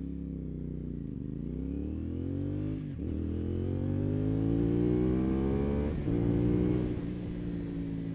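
2024 CFMoto 450SS parallel-twin engine, with a flashed ECU, accelerating from a standstill through the gears. The revs climb steadily and drop sharply at upshifts about one, three and six seconds in.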